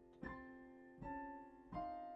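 Upright piano played slowly: three chords struck about three-quarters of a second apart, each left to ring and fade before the next.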